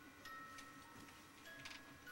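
Faint tinkling music-box melody from a crib soother toy: single chime-like notes held briefly, one after another. A few soft clicks near the end.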